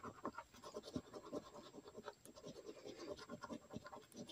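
Coin scraping the latex coating off a paper lottery scratch-off ticket: faint, quick, irregular scratching strokes.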